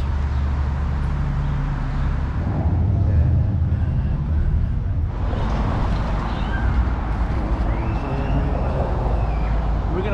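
Street traffic: a steady low engine rumble of vehicles on the road, with faint voices of passers-by in the second half.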